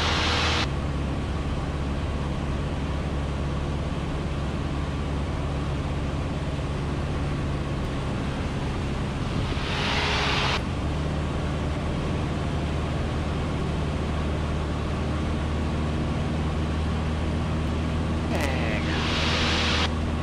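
A Cessna 150's four-cylinder Continental O-200 engine drones steadily in the cockpit in flight, with a constant rush of air. A short burst of hiss comes about halfway through and another near the end.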